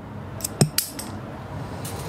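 A few light metallic clicks and clinks from small metal parts and tools being handled: several come between half a second and a second in, and one more near the end.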